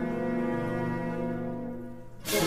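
Slowed-down orchestral film score: a held low chord that gradually fades away.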